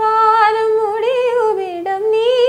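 A woman singing unaccompanied, holding long notes with slow, ornamented bends in pitch. The melody sinks lower about a second and a half in, then rises again near the end.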